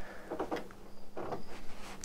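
Faint rubbing and soft knocks of a hand-turned plastic gear train in a toy-brick building's elevator mechanism, nearly 20 meshing gears driven from a knob.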